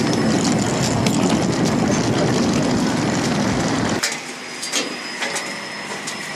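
Loud steady roar of airport apron noise. About four seconds in it cuts off abruptly to a quieter background with a few sharp clicks: footsteps on the aircraft's metal boarding stairs.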